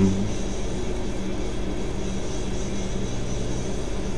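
A steady low hum with a faint rumble underneath.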